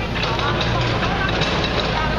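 Several people talking over a steady low engine hum.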